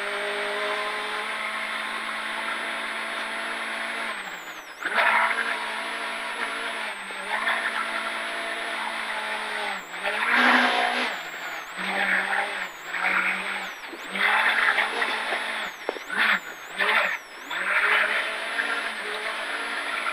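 Volkswagen Golf Mk2 rally car's engine, heard from inside the cabin, running hard at high revs. The pitch drops and climbs again with lifts and gear changes about four, ten and fourteen seconds in and twice more near sixteen seconds, with louder bursts of tyre and gravel noise coming and going.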